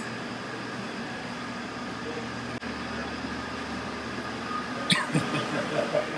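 Steady hum and whir of commercial kitchen equipment and fans, with a brief clatter about five seconds in.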